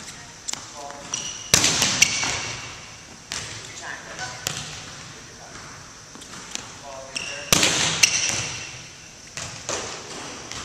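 Volleyball drill in a large reverberant gym: a volleyball is struck hard twice, about six seconds apart, each hit loud and ringing around the hall, with lighter ball contacts and bounces on the hardwood floor between.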